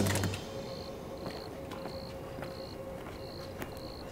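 A cricket chirping steadily, a short high chirp about every 0.6 seconds, over faint night ambience with a low steady hum and a few faint clicks.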